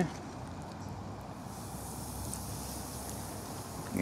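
A battered perch fillet deep-frying in vegetable oil in a cast iron Dutch oven, with a steady sizzling hiss that sets in about a second and a half in. The sizzle shows the oil has just reached frying temperature.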